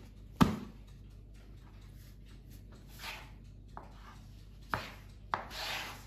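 Hands handling portions of pizza dough on a wooden board: one sharp knock on the board about half a second in, then a few softer knocks and brief rubbing as the dough pieces are pressed and moved on the wood.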